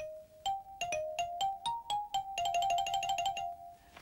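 Xylophone played note by note in a slow little tune, then a quick run of rapidly repeated notes for about a second, stopping shortly before the end.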